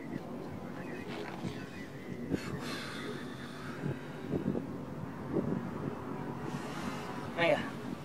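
A motorhome's engine idling steadily, with a couple of brief hissing swells, one in the middle and one near the end.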